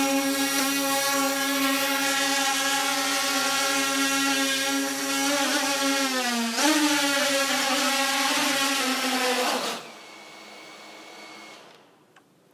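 Wingsland M5 quadcopter's motors and propellers hovering with a steady, powerful-sounding whine. The pitch dips briefly and climbs back about six seconds in. The motors stop about ten seconds in as the drone sits landed, leaving a faint steady high tone.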